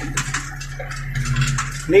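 Tractor engine running steadily, heard from inside the cab while driving, with light clinks and rattles throughout.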